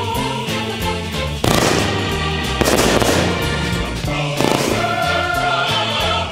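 Background music with a steady bass line, over which a ground firework on pavement goes off with a few sudden bangs, about one and a half, two and a half and four and a half seconds in.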